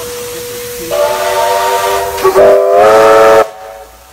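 Steam locomotive whistle sounding a chord of several notes at once, in two blasts: one starting about a second in, then a louder one that cuts off suddenly near the end. A steady hiss of escaping steam runs underneath.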